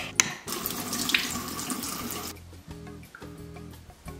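Water from a bathroom tap running into a sink, starting about half a second in and cutting off abruptly a little after two seconds. Background music plays underneath.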